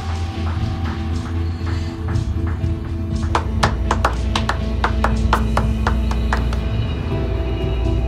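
Dramatic score music with long held tones, joined about three seconds in by scattered hand-clapping from a few people, several claps a second.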